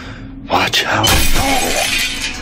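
Film sound effect of glass shattering: a spear smashes through a spaceship's cockpit window, a sudden crash about half a second in that grows louder and stays loud.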